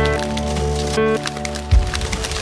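Industrial noise music: a sustained low drone with held tones layered above it under crackling noise, a short pitched blip about halfway through, and a heavy low thump near the end.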